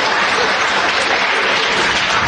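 Live theatre audience applauding, a dense, steady wash of clapping in reaction to a comedy punchline.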